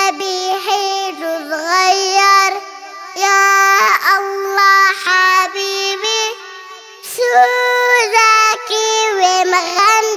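A child singing a melody unaccompanied, in short phrases of long held notes with brief breaks between them.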